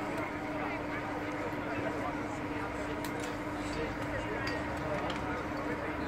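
Indistinct talking over background chatter, with a steady low hum underneath.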